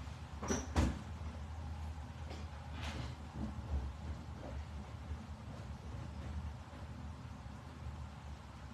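Off-microphone knocks and clatter of kitchen cupboards and utensils being handled, as someone fetches a cake mould from storage. Two sharp knocks come close together about half a second in, another near three seconds and fainter ones after, over a low steady hum.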